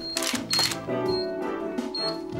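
Camera shutter clicks with a short high beep on each, a few in quick succession, over background music with steady held notes.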